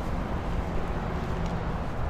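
Steady low rumble of outdoor background noise with a faint low hum and no distinct events.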